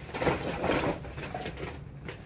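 A bag rustling as it is picked up and handled, loudest in the first second.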